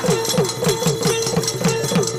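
Instrumental interlude of a devotional bhajan: a hand drum played in a quick, even beat of about five strokes a second, its bass strokes bending down in pitch, with metallic clicks on the beat over a steady held drone note.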